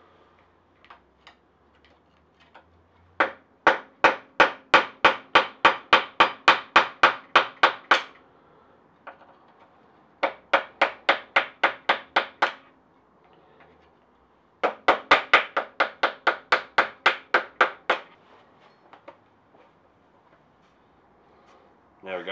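Hammer tapping a large flat-blade screwdriver against the four-slotted steering stem nut of a motorcycle's front end: three runs of quick metallic taps, about four a second, with short pauses between. The nut is slow to turn because the suspended front end's weight is pulling down on it.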